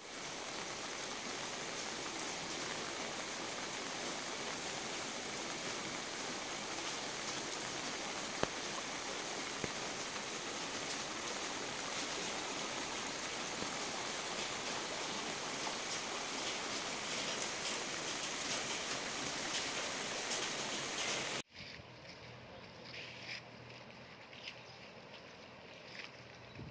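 Floodwater rushing along a street in a steady, even rush. About 21 seconds in it cuts off abruptly, leaving a much quieter outdoor background.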